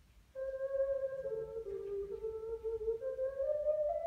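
An ocarina playing a slow phrase of held notes with a pure, flute-like tone. It enters about a third of a second in, steps down a few notes and climbs back up higher near the end.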